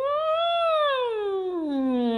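A woman's voice in a smooth vocal siren, gliding up into head voice to a peak about half a second in, then sliding steadily back down: a light warm-up exercise to keep the voice warm.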